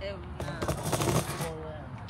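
Faint background talking, with a short stretch of crackling, rustling noise from about half a second to a second in.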